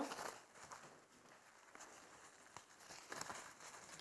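Faint crinkling of a paper towel being handled and pressed onto the membrane of a raw rack of pork ribs to grip it, a little louder about three seconds in.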